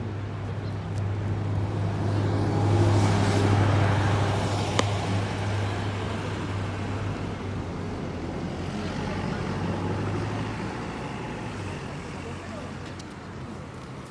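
A motor vehicle's engine running nearby as a steady low hum. It grows louder over the first few seconds and fades out about eleven seconds in, with a single sharp click about five seconds in.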